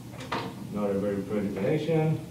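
A man's voice speaking, with a short click about a quarter second in.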